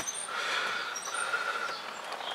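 Quiet background noise inside a car cabin, with a faint steady tone and a few short, high chirps near the start and about a second in.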